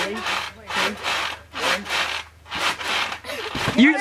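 Trampoline springs and mat creaking and rasping with each bounce, about four bounces a little under a second apart.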